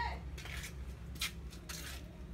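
A few short, soft scraping and rustling noises from handling an aluminium motorcycle throttle body and its small parts, over a steady low hum.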